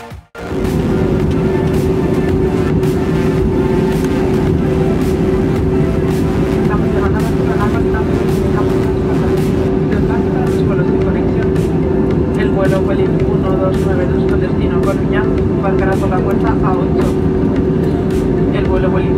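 Cabin noise of an Airbus A320-232 (IAE V2500 engines) in flight, heard from a window seat over the wing: a loud, steady roar of engines and airflow with a constant hum, starting after a brief dropout at the very beginning.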